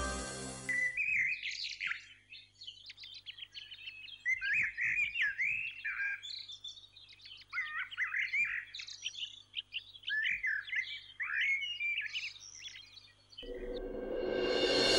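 Several small birds chirping and twittering in quick runs of short rising and falling notes, with brief lulls between the runs. Music fades out about a second in, and another swell of music comes in near the end.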